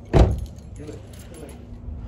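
A single loud thump just after the start, then lighter jingling and clicking.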